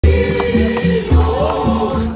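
A school choir singing, with deep drum beats pulsing under the voices.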